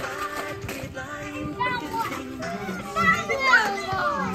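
Young children's high-pitched voices calling out, loudest about three seconds in, over music playing in the background.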